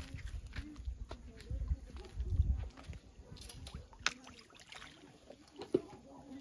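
Outdoor ambience: a low, uneven rumble for the first three seconds, then a few sharp light clicks.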